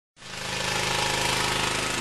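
Petrol-engine pressure washer running steadily, its engine hum under the hiss of the high-pressure water jet. It fades in over the first half second.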